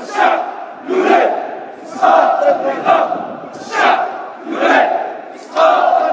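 A large protest crowd chanting a slogan in unison, a shouted phrase about once a second. It is heard through a phone recording, thin and without bass.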